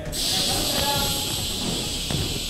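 Compressed air hissing steadily from the stunt rig's air system, starting abruptly and holding at one level, with faint voices beneath it.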